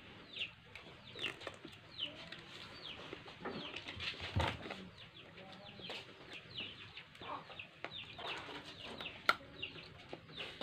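Faint chickens calling: short high chirps falling in pitch, repeating every half second or so. Over them come a few soft clicks of crab shell being picked apart by hand, with one sharper click near the end.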